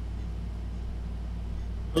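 A steady low hum with no other sound, cut off by a man's voice at the very end.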